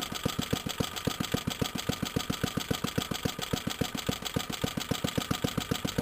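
Suffolk Iron Foundry 75G14 small single-cylinder petrol engine ticking over in an even, rapid firing rhythm. It is idling steadily on a carburettor just reset for a new fuel filter.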